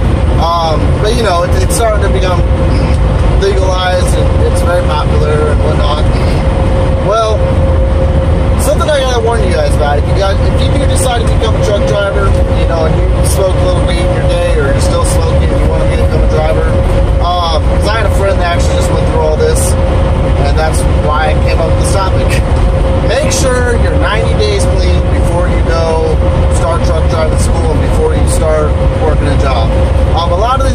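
Steady engine and road drone inside a truck cab cruising at highway speed, with a constant hum held at one pitch throughout. A man talks over it.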